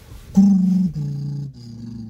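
A man's voice making a low closed-mouth hum in three held notes, each stepping down in pitch.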